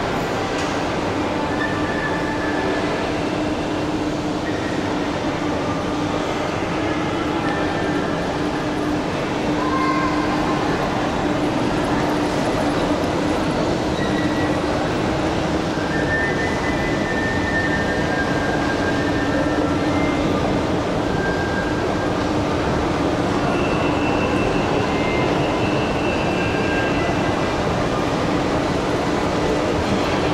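Indoor shopping-mall ambience: a steady machinery hum with a constant low drone, probably from escalators and ventilation, getting slightly louder about a third of the way in. Short faint higher tones come and go over it.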